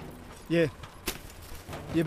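A man's voice in short bursts, with a single sharp click about halfway through.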